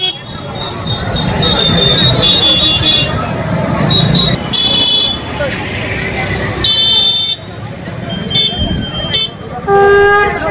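Busy street noise with crowd chatter, and vehicle horns sounding in several short high toots spread through it.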